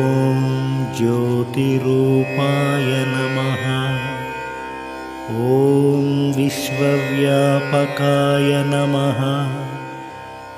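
Indian devotional music: a low male voice singing a Sanskrit hymn in long, held, ornamented phrases over a steady drone.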